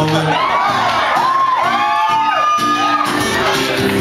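Audience whooping and shouting, several high calls rising and falling over one another, with music underneath.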